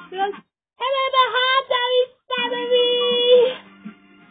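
A high voice singing two short phrases, the second ending on a held note about a second long; faint music follows near the end.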